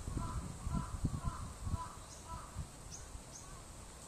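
A bird calling in a quick series of short calls, about two a second, that stop about two and a half seconds in, over irregular low thumps.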